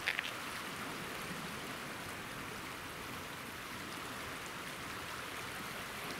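Steady rushing of a flood-swollen river, its fast muddy current pouring past a snag of brush below a bridge. A couple of brief clicks come right at the start.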